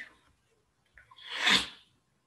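A single short, breathy burst from a person's mouth or nose, swelling and fading over about half a second, about one and a half seconds in.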